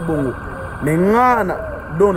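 A person's voice: a brief bit of speech, then about a second in one long drawn-out vocal sound that rises and falls in pitch.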